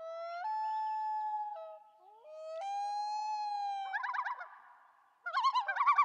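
Common loon calling across water: two long wailing notes that each slide up and hold, then a fast warbling tremolo from about two-thirds of the way in.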